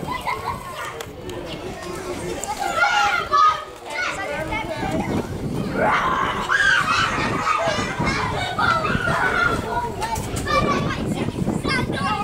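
Young footballers' high-pitched voices shouting and calling to each other during play, with a loud burst about three seconds in and more calling through the second half.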